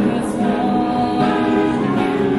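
A woman singing held notes into a microphone, accompanied by a strummed acoustic guitar, in an amplified street performance of a pop song cover.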